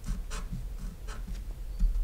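A pen writing on paper in a few short strokes.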